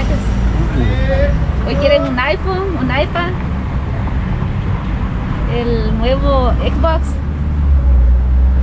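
Voices talking on and off, over a steady low rumble of street noise.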